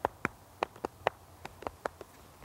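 Leather of a western saddle creaking in a string of short, sharp, irregular clicks, about ten in two seconds, as a man's weight presses and shifts on it from the side.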